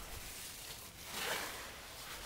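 Faint rustling, swelling a little about a second in.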